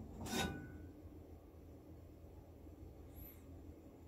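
Stainless steel frying pan scraping briefly on the metal gas-burner grate about half a second in, as it is moved and tilted to spread the oil.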